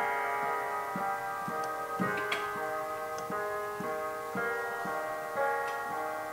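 Digital keyboard played with a piano sound: notes and chords struck about twice a second, in an even pattern, each left ringing into the next.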